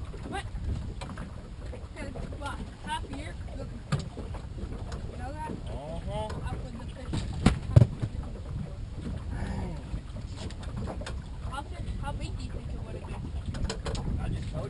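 Wind buffeting the microphone as a steady low rumble, with faint, indistinct voices. Two sharp knocks come close together about halfway through, and a lighter one a little earlier.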